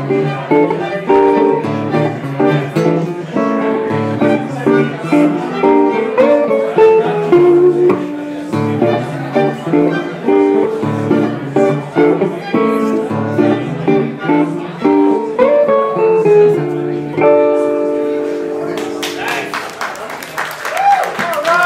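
Gypsy-jazz trio of two acoustic archtop guitars and violin playing a minor-key tune, the violin bowing the melody over the guitars' rhythmic chords. The piece ends on a long held chord about 17 seconds in, and applause starts just before the end.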